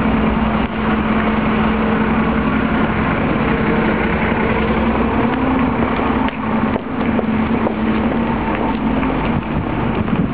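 Street traffic with a steady engine drone, like a vehicle idling, over general street noise. A few faint knocks come about six to seven seconds in.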